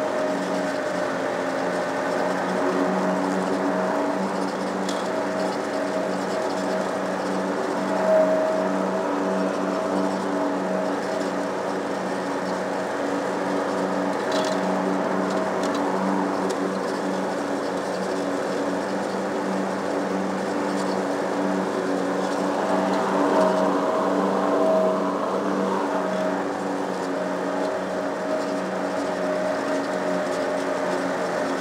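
Small lawn mower engine running steadily under load while cutting grass, with the level swelling slightly a couple of times.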